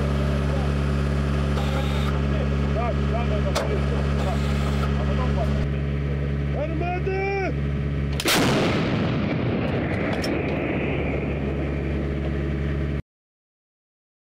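A French TRF-1 155 mm towed howitzer fires one round about eight seconds in: a single sharp blast, the loudest sound here, followed by a rumble that rolls on for several seconds. Before the shot there is a steady engine hum and a short shouted call.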